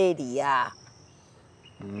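Crickets chirping steadily at a high pitch in the background, plain during a short pause in speech. A voice talks for the first part of a second and comes back near the end.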